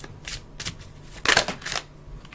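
Tarot cards being shuffled and handled by hand: a few short papery riffles, the longest and loudest about a second and a quarter in.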